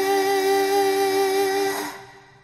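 A female singing voice holding one long note with a light vibrato over soft accompaniment. The note fades out near the end.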